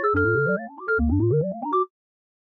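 A phone startup jingle played on a synthesizer: two quick rising runs of notes, the same phrase repeated, which cut off abruptly just before the end.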